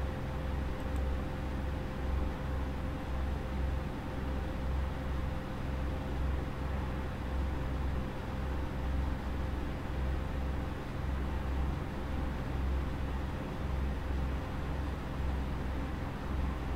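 Steady background hum and hiss with a low rumble that throbs unevenly, and no distinct events.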